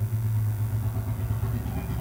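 Steady low hum with a faint rumble under it, holding even throughout.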